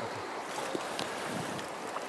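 Steady rush of a shallow river running over gravel, with a few faint ticks of water close by.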